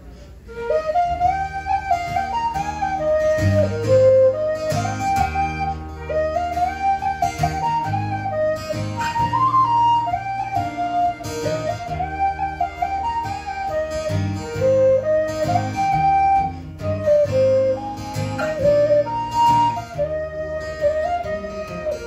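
Irish tin whistle playing a waltz melody over strummed acoustic guitar chords, the tune starting about half a second in.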